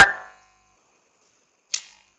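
The last syllable of a man's speech, then about a second of dead silence, broken near the end by a short hiss, likely a breath or the start of the next word.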